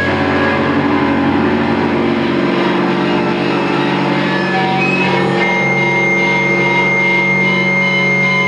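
Live rock band holding sustained, droning chords on electric bass, guitar and keyboard, with no clear drumbeat. The low notes shift about two and a half seconds in, and a steady high tone comes in just after halfway.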